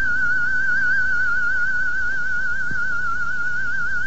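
One high musical tone held without a break, with a fast, even vibrato, theremin-like in character.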